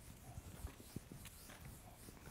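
Faint footsteps on a hard floor: a handful of light, irregular taps over quiet room tone.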